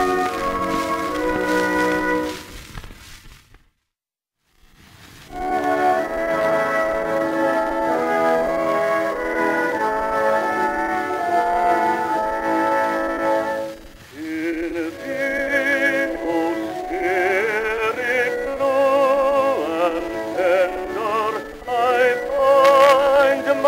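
Acoustically recorded Victor 78 rpm record of hymns for baritone with orchestra. A hymn fades out into a second of silence about three seconds in. The orchestra then plays sustained chords as the introduction to the next hymn, and the baritone voice comes in with a strong vibrato about two-thirds of the way through.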